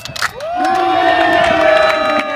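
Loud cheering from the pilot's team: one long held shout starting about half a second in, with a few hand claps around it.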